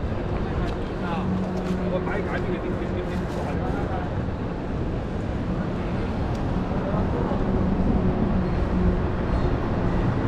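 Downtown street ambience: a steady low rumble of traffic with a faint held engine hum, and indistinct voices of passers-by, growing a little louder after about seven seconds.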